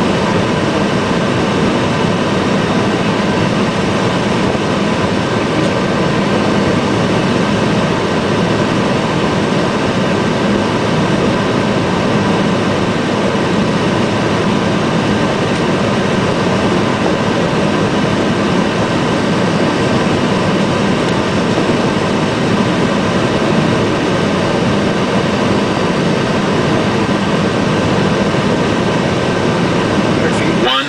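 Steady rushing noise inside the flight deck of a Boeing 757-200ER on final approach. It is a constant blend of airflow and engine noise, with a couple of faint steady tones above the rush.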